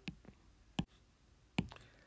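Two sharp single clicks, under a second apart, in a quiet room: a computer being clicked to advance to the next presentation slide.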